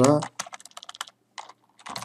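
Computer keyboard typing: a quick run of keystroke clicks, then a few isolated keystrokes after a short pause.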